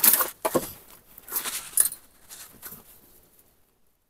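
Plastic bags and rubbish rustling and crinkling as a gloved hand rummages through a bin, in several short bursts that die away near the end.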